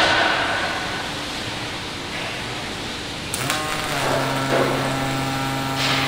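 Robotic arc welder welding a steel trailer chassis frame: a steady hiss, then a little past halfway a sudden change to a steady low buzzing hum.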